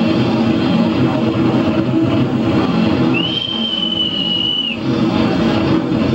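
Live jazz band playing with a drum kit prominent. About three seconds in, a single high, steady whistle sounds over the music for about a second and a half.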